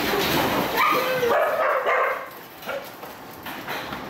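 Several dogs yipping and barking in the first two seconds, then quieter, with a few light clicks.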